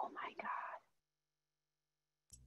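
A brief, faint whispered voice lasting under a second at the start, then silence.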